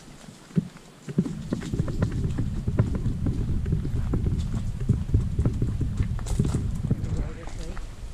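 Footsteps on a dirt trail with a loud low rumble and crackle on the handheld camera's microphone, starting about a second in.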